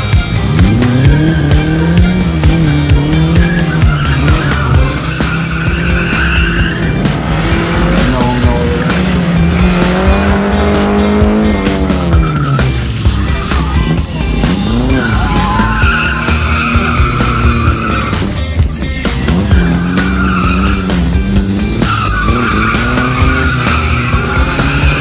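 Classic Lada saloon's four-cylinder engine revving up and down hard, with its tyres squealing again and again as it slides through tight gymkhana turns.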